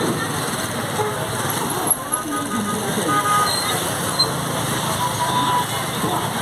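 Roadside traffic: motorcycles passing close by over a crowd's background chatter, with a few short horn toots.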